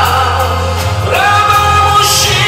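Live ballad played loud through the hall's sound system: male voices holding long sung notes over backing music with a steady low bass, the melody moving to a new note about a second in.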